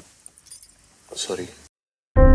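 Faint live ambient sound in a break between music tracks, with a brief burst of a person's voice about a second in; the sound then cuts off abruptly to silence.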